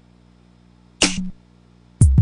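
Single drum samples sliced from a drum loop, triggered one at a time from the pads of Groove Agent One, a software drum machine: a short, bright, noisy hit about a second in, then a louder, deep kick-like hit with a sharp click right at the end.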